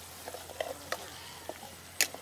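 Dried fish and sliced onions frying in oil in a large pan, a steady sizzle, while a metal spatula stirs them with short scrapes and clicks against the pan, the sharpest one right at the end.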